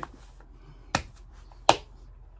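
Two finger snaps, sharp and short, about three quarters of a second apart.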